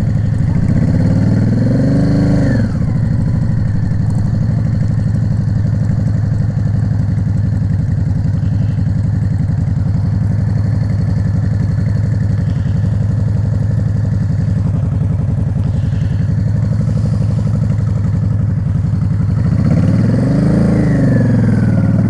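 Yamaha Drag Star 650's 649 cc V-twin running at low revs as the bike rolls slowly through a low-speed manoeuvre, its pitch rising and falling briefly about a second in and again near the end.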